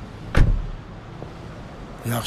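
A car door shutting: one heavy thump about half a second in, over a low steady background rumble.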